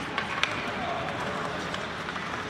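Ice hockey play in an echoing indoor rink: two sharp clacks in the first half second over a steady hiss of skates on the ice, with indistinct voices.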